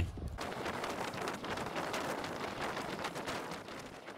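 Faint outdoor background noise: an even hiss with many small scattered crackles.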